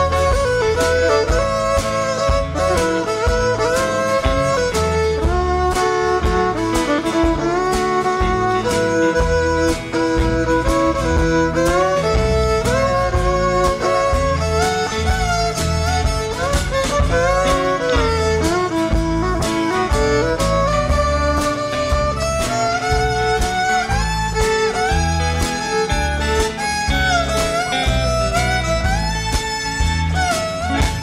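Fiddle solo with sliding, gliding notes over a country band's steady backing of guitar, bass and drums: the instrumental break in a live country song.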